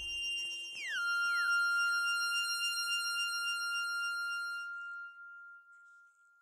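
Electronic synth tones closing out a song: several steady high tones, then pitches sliding down about a second in that settle into one held tone. Most of the tones drop away about five seconds in, and the held tone goes on faintly.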